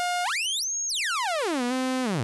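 Tiptop Audio ATX1 analog oscillator's tone swept by its full-range frequency knob. It holds a mid pitch, climbs steeply to a very high whistle about half a second in and holds there briefly, then glides down over about a second to a low pitch that holds near the end.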